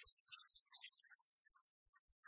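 Near silence, with faint scattered ticks.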